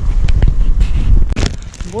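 Wind buffeting and handling noise on a handheld camera's microphone as the camera is turned around: a steady low rumble with several knocks and rubs, the loudest pair about a second and a half in.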